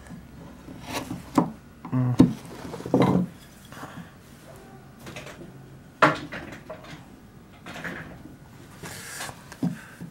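Hand carving gouges cutting and chipping into linden wood, with several sharp, irregularly spaced clicks and knocks of steel tools on the wood and the wooden bench.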